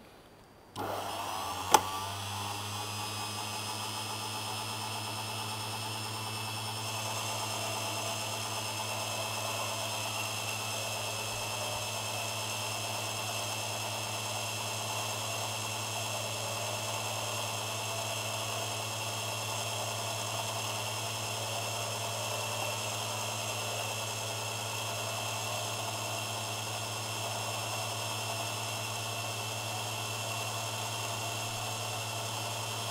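Unimat 3 mini lathe switched on about a second in, its motor spinning up with a rising whine and a sharp click just after, then running at a steady speed with a low hum and high whines while taking a light finishing cut on a small piston.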